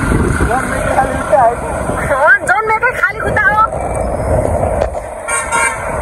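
Road and wind noise from riding on a motorbike through traffic, with a short vehicle horn honk about five seconds in.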